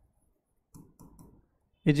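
A few faint clicks of a stylus tapping on a glass touchscreen whiteboard while writing, then a man's voice starts just before the end.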